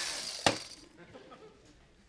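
Electric carving knife motor buzzing and winding down, ending in a single sharp click about half a second in.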